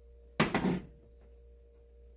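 A single clank of metal cookware about half a second in, fading quickly, as a skillet is set down; a faint steady hum runs underneath.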